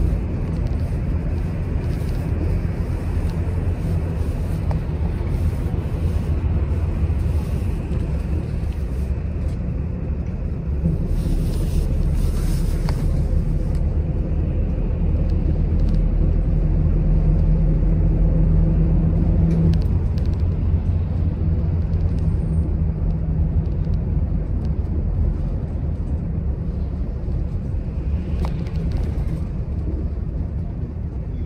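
A moving express bus heard from inside the cabin: a steady low rumble of engine and road. A low hum in it grows stronger for a few seconds past the middle.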